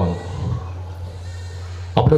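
Steady low electrical hum of the public-address system, with faint room noise.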